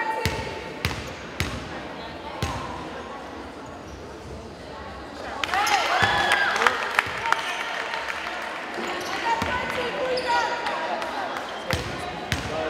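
A basketball bounced a few times on a hardwood gym floor as the free-throw shooter dribbles before shooting, each bounce ringing in the large hall. About halfway through comes a louder stretch of sneaker squeaks and players' voices.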